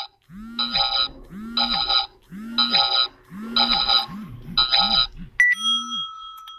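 Electronic sound effects from a smartphone: a cluster of chiming tones over a low rising-and-falling note, repeating about once a second. Near the end comes a short beep, then a steady held tone.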